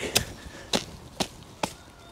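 Four short, sharp taps or knocks, roughly half a second apart, from pulling and handling freshly lifted leeks with soil on their roots at a garden fork.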